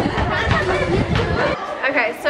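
Many voices of children and adults talking and calling out over each other during an outdoor group game. The chatter cuts off suddenly about three-quarters of the way through.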